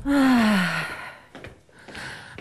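A loud, breathy sigh falling steadily in pitch, followed about a second later by a few faint clicks.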